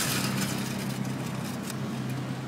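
A motor vehicle engine running with a steady low hum, starting abruptly and holding through.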